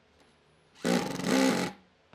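Makita cordless impact driver driving a wood screw into a pine block, in one short burst of just under a second starting about a second in.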